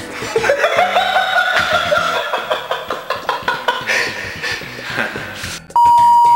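Laughter in pulsing bursts after a punchline, then near the end a loud, steady 1 kHz censor bleep cuts in.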